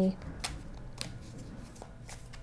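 A deck of tarot cards being shuffled by hand: soft, faint papery sliding of cards with a few small clicks, about half a second in, at one second and near the end.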